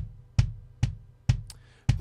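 A soloed kick drum track played back entirely as Drumagog's DW 22 Maple Kick sample, which replaces the recorded kick. It plays a steady pattern of about two hits a second, each a sharp attack with a booming low end that dies away quickly.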